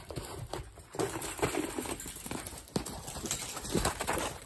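Hoofbeats of a mustang running on the dirt footing of a round pen: a string of irregular thuds as the horse passes close by.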